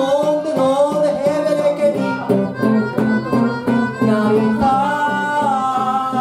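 Live blues harmonica (blues harp) playing held and bending notes over a strummed guitar accompaniment. The strumming gets busier about two seconds in.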